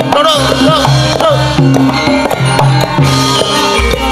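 Javanese gamelan ensemble playing a lively piece: kendang hand drums beat out a rhythm over the ringing notes of bronze metallophones.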